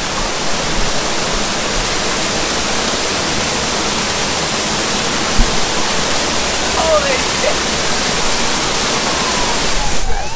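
Water of a public fountain's man-made waterfall pouring over a rock face into a pool, a steady, loud rush. There is a single short knock about five seconds in.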